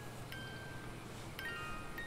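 Faint, sparse chime notes from a horror film's soundtrack: a single high note rings out about a third of a second in, and a small cluster of notes follows about a second later.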